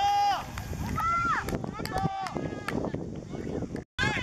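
Young boys' high-pitched shouts and calls on a football pitch as a goal is celebrated: a few short yells over outdoor noise with scattered knocks. The sound cuts out abruptly for a moment near the end.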